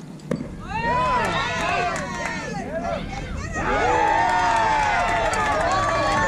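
A single sharp crack from the play at the plate, then a crowd of spectators shouting and cheering at once, many voices overlapping and staying loud to the end.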